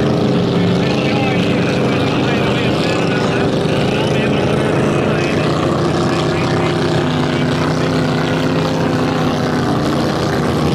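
Vintage racing hydroplane's engine running flat out during a heat: a loud, steady drone made of several engine tones, with one tone growing stronger about seven seconds in.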